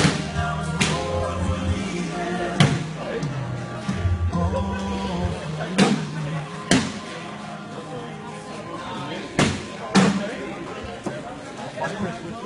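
Cornhole bean bags landing with sharp thuds on wooden boards, about seven hits at irregular intervals, over background music and chatter.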